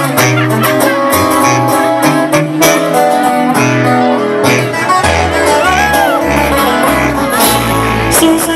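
Live amplified regional Mexican band music, an instrumental passage with plucked guitar-like strings over a bass line that drops deeper about five seconds in.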